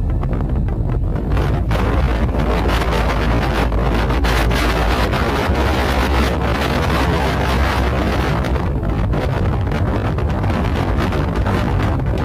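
Strong wind buffeting the microphone: a loud, steady rumbling roar with irregular gusts.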